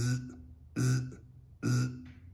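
A man's voice making short buzzing 'zzz' sounds, three in a row, a little under a second apart, imitating a welder laying short stitch welds on thin sheet steel, welding in bursts so the metal doesn't burn through.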